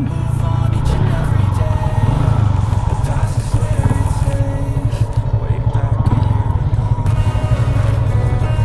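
Motorcycle engine running steadily while riding, with background music over it.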